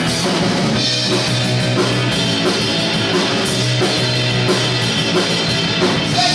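Live rock band playing loudly: electric guitars over a drum kit keeping a steady beat.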